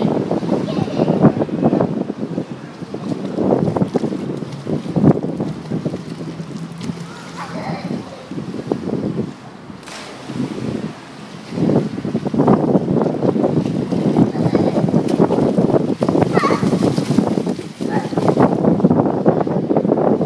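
Pool water splashing and sloshing as a small child in armbands paddles, with wind buffeting the microphone. A voice calls out briefly a couple of times.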